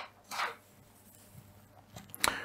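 Quiet room tone, with one short soft noise about a third of a second in.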